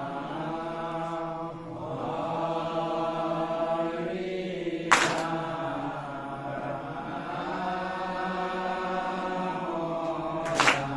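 Group of men chanting an Assamese devotional naam in unison, one melodic chant with long held notes. A single sharp clap about halfway through is the loudest sound.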